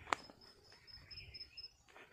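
An insect, likely a cricket, chirps in a steady series of short high-pitched pulses, about five a second. A single sharp click sounds just after the start.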